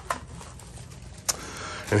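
Fan parts and their plastic packaging being handled: a couple of sharp clicks near the start and another about a second and a half in, over a low steady hum.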